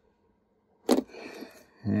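A small circuit board set down on a workbench: one sharp tap about a second in, followed by a brief soft scrape. A man starts talking near the end.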